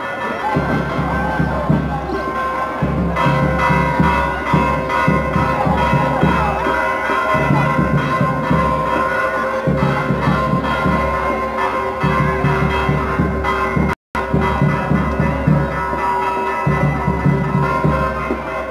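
Church bells ringing continuously as a peal, their tones held through the whole stretch over a low, uneven crowd rumble. A momentary break in the sound about fourteen seconds in.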